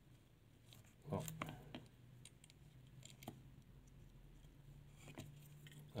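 Faint, scattered small clicks and taps of fingers working the internal flex-cable connectors of an opened Samsung Galaxy S7 Edge, over a low steady hum. A short "oh" is spoken about a second in.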